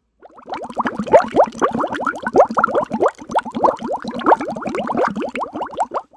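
Liquid bubbling and gurgling: a loud, dense run of short rising bubble chirps, several a second. It starts a moment in and stops abruptly near the end.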